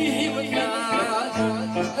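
Traditional Greek folk song played live on violin, laouto and electric guitar, with a man singing the melody.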